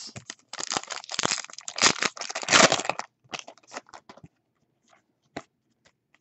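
Foil wrapper of a Donruss Optic baseball card pack being torn open and crinkled: a dense run of crackling for about three seconds. After that come a few scattered light clicks as the cards are handled.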